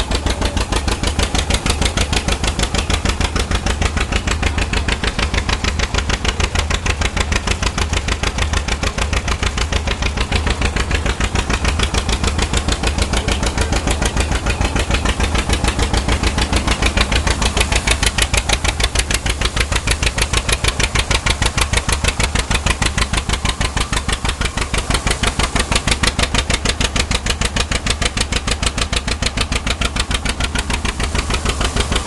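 John Deere 620 tractor's two-cylinder engine running steadily with a fast, even beat, driving the threshing machine by belt.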